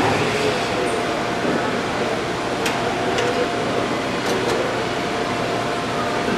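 Assembly-plant floor noise: a steady mechanical drone with a constant hum tone underneath, and a few short sharp metallic clicks around the middle.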